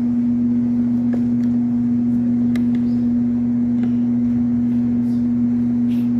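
A loud, steady, low hum held at one pitch without a break, with a few faint clicks.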